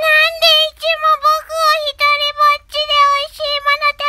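Guinea pig wheeking: a loud run of short, high-pitched squeals, about three a second, each note holding one pitch with a slight dip.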